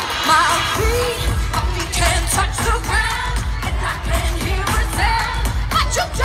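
Live pop music through a concert PA: a female vocal group singing over an amplified backing track with a heavy bass beat, heard from within the audience.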